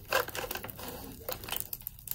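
Disposable aluminium foil pan being settled onto the metal grill grate between charcoal baskets: a sharp knock just after the start, then a few fainter ticks and scrapes that die away in the second half.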